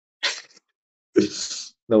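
A man sneezing: a faint, short burst about a quarter second in, then a louder sneeze just after a second.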